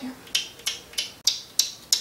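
Pretend chewing as a toy baby doll is fed from a plastic spoon: six short, wet smacking clicks, about three a second.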